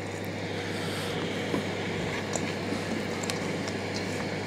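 A steady low hum over a constant background noise, with a few faint, short clicks.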